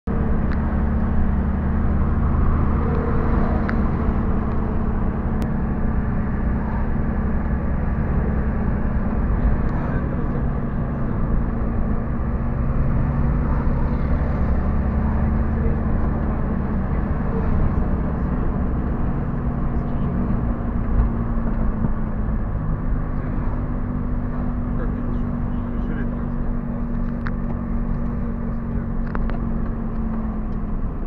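Car engine and road noise heard from inside the cabin while driving: a steady low hum whose pitch shifts slightly about two-thirds of the way through.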